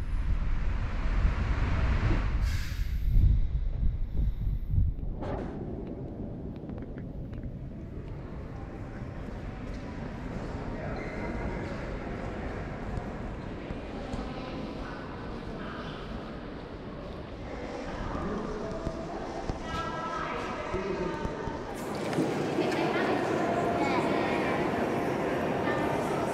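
Wind rumbling on the microphone outdoors for the first five seconds or so, then the hush of a large, echoing cathedral interior with distant visitors' voices murmuring.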